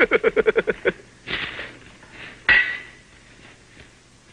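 A man laughing heartily, about nine quick "ha" pulses in the first second, then a breathy gasp. About two and a half seconds in comes a single sharp metallic clank with a brief ring.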